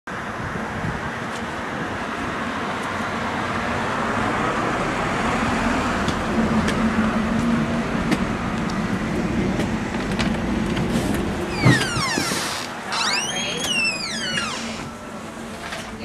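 Street traffic noise with a vehicle passing, swelling over the first several seconds and then easing. About twelve seconds in comes a sharp knock, followed by a few high, sliding squeals.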